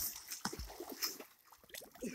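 Pool water splashing from a swimmer's front-crawl arm strokes: a few uneven splashes in the first second, dying down after that.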